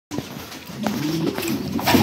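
Domestic pigeons cooing in a loft, low wavering calls overlapping one another. Near the end there is a short flutter of wings as a bird takes off.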